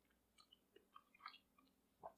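Near silence, with a few faint, soft mouth clicks of someone chewing a mouthful of soft beef-and-tallow pemmican.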